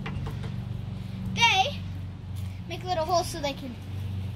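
Two short, high-pitched calls from children in the background, about one and a half seconds and three seconds in, over a steady low hum.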